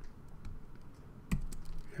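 Typing on a computer keyboard: a few soft key clicks and one sharper keystroke about 1.3 seconds in, as the pipe separator character is entered between attribute values.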